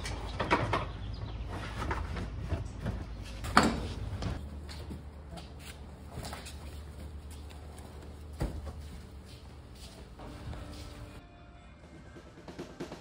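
Knocks and thuds of boxes and household items being stacked inside a moving container, a few separate bumps with the loudest about three and a half seconds in.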